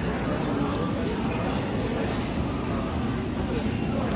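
Meat sizzling on a Korean barbecue table grill as a steady hiss, with a few metal clinks from tongs turning the pieces on the wire grate.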